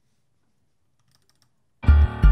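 A few faint computer clicks. Near the end, playback of a boom bap hip hop beat in Propellerhead Reason 9 starts suddenly: deep bass notes repeating under a layered instrumental part.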